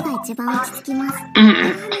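Anime voice acting in Japanese: a young girl's character voice speaking, with light background music under it and a short loud burst of voice about one and a half seconds in.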